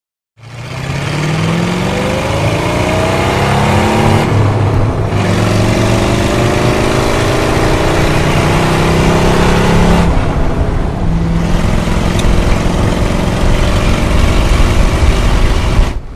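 Hot-rodded 1927 Ford Model T roadster's engine pulling hard, its note rising as it accelerates, dropping at two upshifts about four and ten seconds in, then running steadily at cruising speed.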